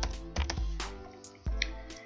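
Typing on a computer keyboard: a run of quick key clicks, with music playing faintly underneath.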